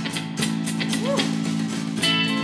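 A band playing an instrumental passage: strummed acoustic and electric guitars over a steady bass line, in a regular strumming rhythm.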